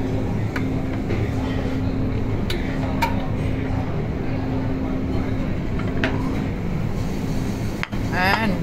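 Restaurant buffet din: a steady low hum under a murmur of voices, with a few sharp clinks of serving utensils and dishes against the metal buffet trays.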